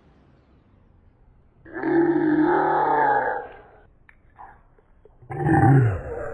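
A loud, low growling vocal sound held for about a second and a half, then a second deep, low sound near the end.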